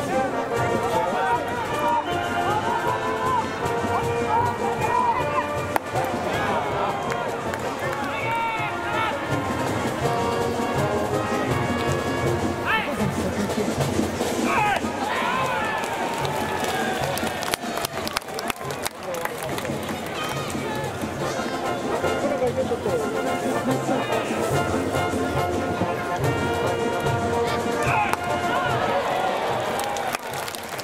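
Ballpark cheering section: trumpets and other brass playing a cheering tune while many voices chant and sing along. The sound dips briefly a little past the middle.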